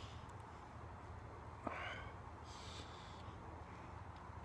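Quiet background with a low steady hum; a little under two seconds in, a small click and a short soft breath from a man, and another faint breath about a second later.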